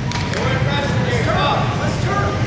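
Indistinct voices over a steady low din of a large reverberant hall.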